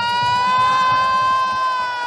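A single long, high-pitched held cry that slides up just before and then holds nearly steady at one pitch, starting to sink slowly near the end, while the music's beat has dropped out.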